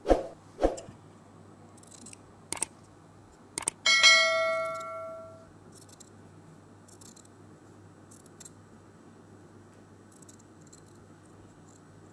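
A subscribe-button sound effect: sharp mouse-style clicks, then about four seconds in a single bell ring that fades over a second and a half. Faint snips of scissors cutting a paper pattern follow.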